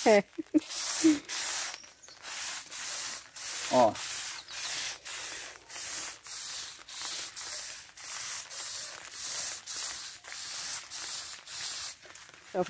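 Hand-held garden sprayer wand misting liquid foliar fertilizer onto bean plants: a high hiss that swells and fades about twice a second.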